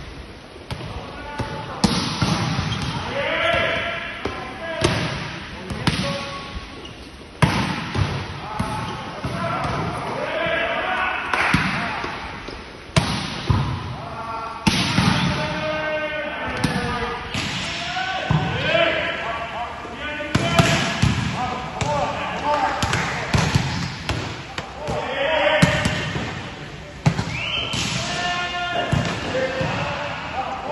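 Volleyballs smacked hard and rebounding off arms, floor and walls in a reverberant gym during a digging drill, a sharp hit every one to three seconds.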